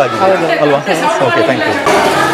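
People talking over one another: overlapping chatter with no single clear speaker.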